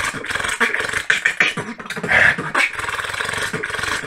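Solo human beatboxing: a fast, dense run of mouth-made drum sounds, kicks, snares and clicks, with one hand cupped at the mouth. A brief louder held vocal sound breaks in about halfway through.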